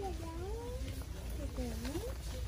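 A voice making two drawn-out sounds that dip in pitch and rise again, one in the first second and one near the end, over a steady low hum.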